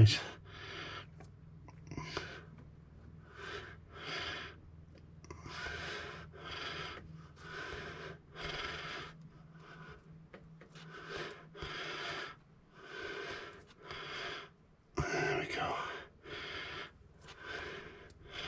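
A man breathing heavily close to the microphone, a breath in or out about every second, with one louder breath near the end, over a faint steady low hum.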